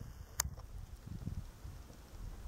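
Wind buffeting the camera microphone in uneven low rumbles, with one sharp click about half a second in.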